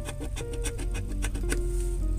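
A large coin scraping the coating off a scratch-off lottery ticket in quick, irregular strokes, over background music of held notes.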